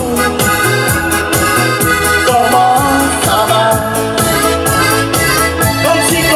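Live dance-band music: an electronic keyboard playing organ-like chords over a steady drum beat through the PA.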